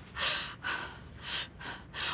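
A woman gasping and breathing hard in distress: three breathy gasps in quick succession.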